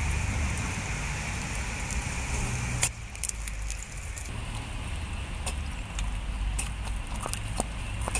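Water from a plastic bottle pouring and splashing onto a waterproof hiking boot's textured upper, then a series of short squirts and drips spattering with small clicks in the second half, over a steady low rumble.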